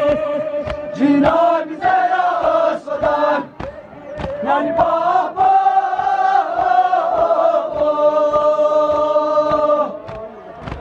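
A nauha, a Shia mourning lament, chanted by male voices with the crowd joining in, over regular chest-beating slaps (matam) about twice a second. Near the end the voices hold one long steady note.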